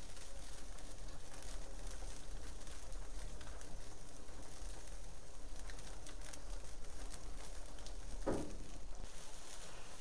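Stock boiling in a large paella pan over an open orange-wood fire: a steady bubbling hiss with faint crackles from the burning wood. A brief louder sound comes about eight seconds in.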